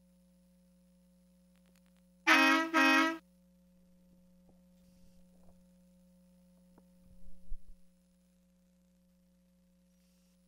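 Toy truck's electronic horn sounding two short, loud beeps in quick succession, followed near the end by a few faint low knocks.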